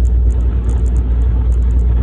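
Steady low rumble of a truck's engine heard from inside the cab, unbroken and even in level.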